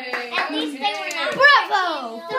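Excited voices of a child and family with a few hand claps; a child's voice rises high and loudest about three-quarters of the way through.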